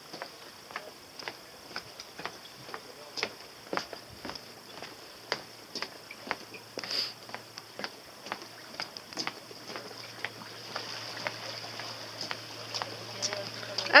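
Footsteps on a sailboat's wooden deck: sharp, irregular knocks about once or twice a second. In the last few seconds a low steady hum joins them, from the inflatable boat's Suzuki outboard motor running.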